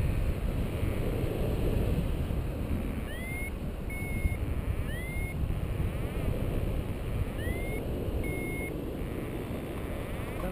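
Steady wind rushing over the microphone in flight. From about three seconds in, five short high beeps sound over it, some sliding up in pitch, from a paragliding variometer. Its beeping is the sign that the glider is climbing in lift.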